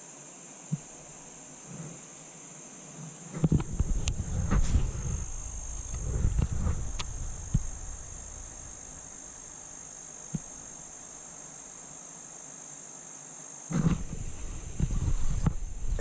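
Insects buzzing in a steady high drone throughout. About three seconds in, and again near the end, bursts of low rumble and knocks on the microphone come and go, and a few small sharp clicks sound in between.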